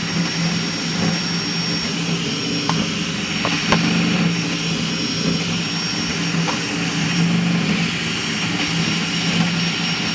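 High-speed crossed-gantry 3D printer running a print: its motors hum in shifting low tones as the print head darts back and forth, over the steady whir of its cooling fans and a thin, steady high whine. A few light clicks come a few seconds in.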